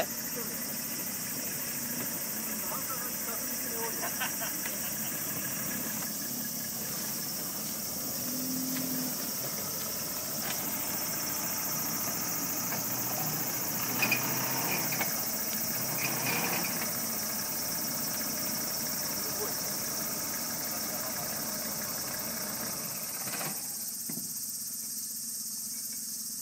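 Toyota Land Cruiser 70's engine running steadily at low revs while the truck sits stuck in the rut. Faint voices come in about halfway through, and the sound thins out a couple of seconds before the end.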